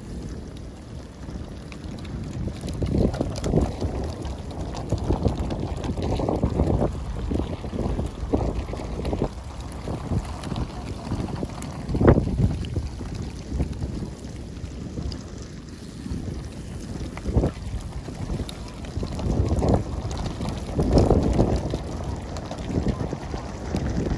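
Wind buffeting the microphone: an uneven, low noise that swells and falls, broken by a few sharp knocks, the loudest about twelve seconds in.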